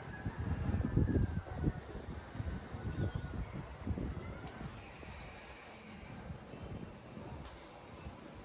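Wind buffeting the microphone in uneven gusts, strongest in the first half, with faint bird calls in the distance.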